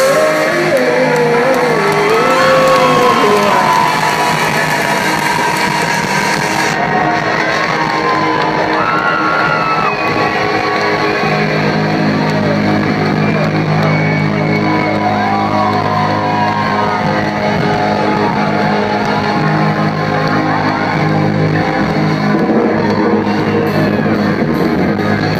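Live rock band playing loud: electric guitars with bending lead notes over bass and drums.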